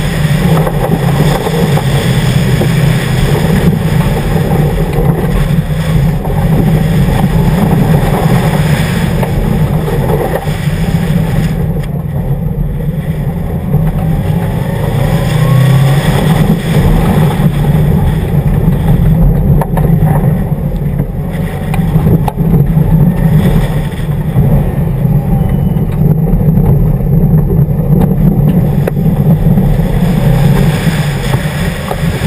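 2011 Subaru WRX's turbocharged flat-four engine driven hard on a dirt rally course, its note rising and falling, with a steady rush of tyres and road noise underneath.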